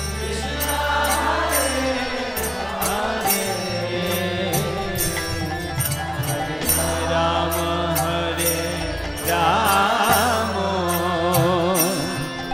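Devotional kirtan: voices chanting a mantra over a sustained low drone, with sharp high strokes keeping a steady beat. The singing swells with a wavering pitch near the end.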